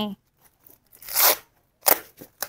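A large potted ixora bush being grabbed and handled, its leaves and branches rustling: a short rustle about a second in and a sharp crack near the end.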